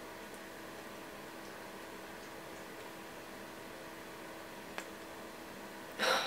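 Quiet room tone: a steady low hiss with a faint hum, and one small click a little under five seconds in.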